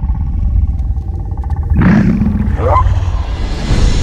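A sound-designed dinosaur call about two seconds in, with a cry that rises in pitch, over a steady deep low rumble.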